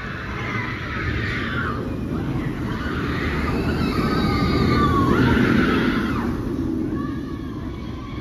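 Steel inverted roller coaster train rushing through a loop overhead, its rumble building to a peak about five seconds in and then fading. Riders' screams rise and fall over the rumble.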